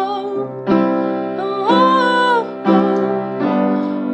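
Piano ballad music: a woman sings a few wordless held notes that slide and waver in pitch, over piano accompaniment.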